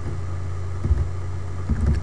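Steady low hum throughout, with a few faint keyboard keystrokes about a second in and again near the end.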